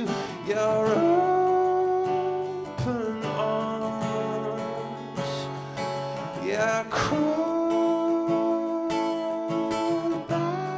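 Acoustic guitar playing slow, ringing chords, changing chord about every three to four seconds, in the instrumental close of a live acoustic song.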